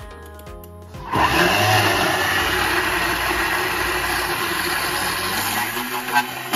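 A Thermomix blade starts about a second in, spinning up with a brief rising whine, then runs loud and steady at high speed, grinding toasted sesame seeds into tahini.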